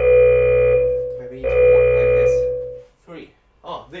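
Electronic round timer sounding two long beeps, each steady in pitch and about a second and a half long, the second starting right after the first; a few spoken words follow near the end.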